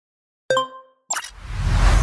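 Intro logo-animation sound effects: a short pitched pop with a brief ringing tone about half a second in, then a second sharp pop just after a second, followed by a whoosh with a deep rumble that swells toward the end.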